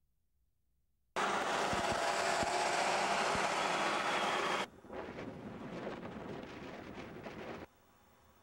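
Highway traffic noise: a steady hiss of tyres on the road that cuts in abruptly about a second in. About halfway it drops suddenly to a quieter outdoor noise with faint clicks, which cuts off near the end.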